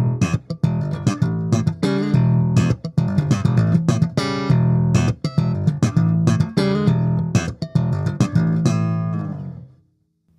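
Ibanez GVB1006 six-string electric bass played slap style on its neck pickup, with the lows and highs slightly boosted: a fast funky line of sharp slapped notes over strong low notes, dying away just before the end.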